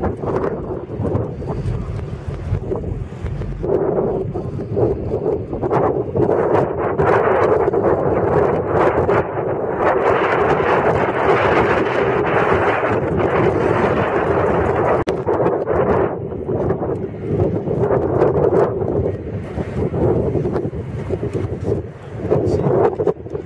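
Wind buffeting the camera microphone: a loud, rough rushing noise that swells about four seconds in and eases off near the end.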